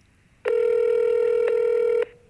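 Phone ringback tone of an outgoing call ringing through a smartphone's speaker: one steady ringing tone about a second and a half long, starting about half a second in.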